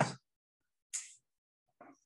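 A pause between a man's words: the tail of a word at the start, then one short hiss about a second in that fades quickly, and a brief faint sound near the end.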